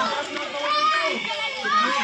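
Many children's voices at once, talking and calling out over one another.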